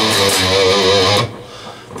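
Amplified electric guitar holding a single lead note with wide vibrato, the last note of a solo melody phrase. The note drops off sharply about a second and a quarter in and then fades quietly.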